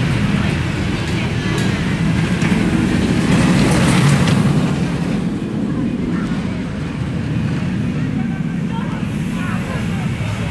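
Shockwave stand-up roller coaster's train rumbling along its steel track overhead, loudest around four seconds in and then easing off, with people's voices around it.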